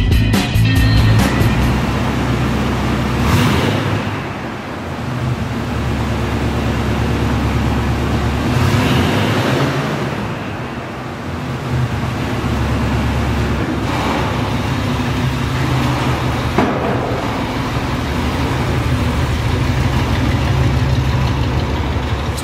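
1968 Chevrolet C10 pickup's engine running with a steady low exhaust rumble and a few brief revs as the truck drives away.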